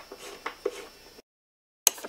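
Faint clicks of a hand tool working a crash-bar bolt on a motorcycle, broken by a moment of dead silence at an edit, then a sudden loud burst right at the end as a socket ratchet starts.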